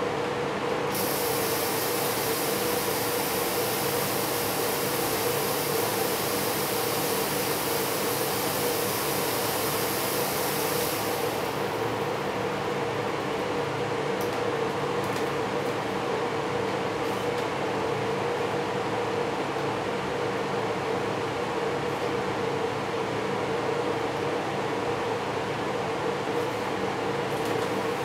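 Corsair 700D case's stock fans running steadily with a constant hum and airflow noise. From about a second in to about eleven seconds a loud hiss joins in, the fog machine blowing smoke into the case, then cuts off suddenly.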